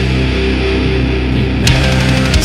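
Post-hardcore rock band playing: heavy electric guitars over bass and drums, with a sharp accent hit about a second and a half in.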